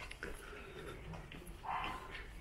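A short animal call near the end, over faint knocks like steps on cobblestones.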